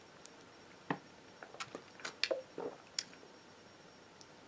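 A person sipping a fizzy drink from a plastic bottle and swallowing: a scatter of faint, short mouth clicks and small gulps, with light handling of the bottle.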